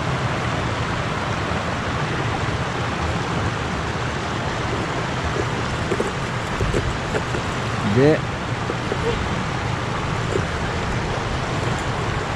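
Steady rush of a shallow stream's water running and spilling over a low weir.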